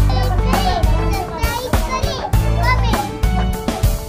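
A young girl speaking animatedly over background music with a steady bass line.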